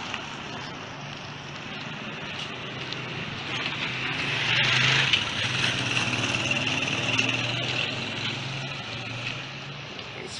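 Street traffic at night: a vehicle's engine hum over steady road noise, getting louder about four to five seconds in and easing off near the end.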